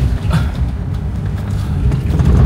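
Car's engine and tyres producing a steady low rumble, heard from inside the cabin while driving slowly over a rough, rutted dirt road.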